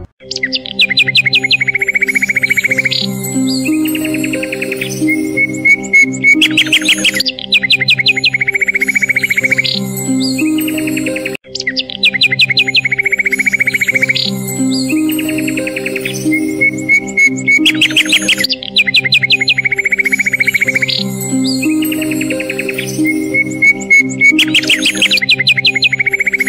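Background music: a light instrumental loop with a simple melody over held notes, mixed with rapid bird-chirp trills, repeating about every eleven and a half seconds.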